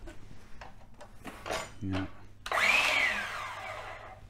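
DeWalt DCS365 7.5-inch cordless mitre saw triggered once without cutting: the motor and blade whine up suddenly, then wind down with a falling pitch over about a second and a half.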